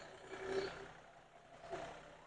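Engine of a John Deere compact utility tractor running faintly as the tractor drives slowly past.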